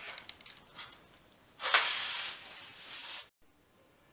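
Sandpaper rubbed by hand along painted steel bed rails: light scratchy strokes, then a loud, longer rasping stroke of about a second and a half past the middle. The sound stops abruptly a little after three seconds in.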